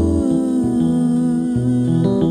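Slow soul ballad: Rhodes electric piano chords with low notes shifting under them, and a held hummed vocal note that slides down near the start.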